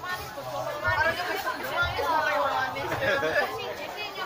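Several people's voices talking over one another, with a few low thuds underneath.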